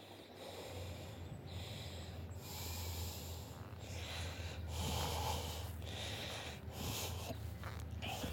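A person breathing in and out close to the microphone while walking, each breath about a second long, over a steady low rumble.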